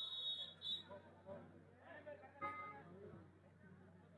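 Referee's whistle blown in two short, high blasts right at the start, the second briefer than the first, with voices talking over the rest of the match.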